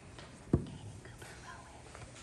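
Faint whispering voices over quiet room tone, with a single sharp thump about half a second in.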